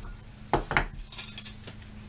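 Metal gear handled on a tabletop: a steel M1 helmet with its chin-strap buckles and a multi-tool give several quick metallic clinks and knocks, the first about half a second in and a cluster about a second in.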